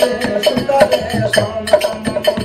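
Folk music from a small ensemble: a harmonium holding steady reedy notes, a two-headed hand drum beaten in a quick rhythm, and small hand cymbals clinking, with a man singing a folk ballad over them.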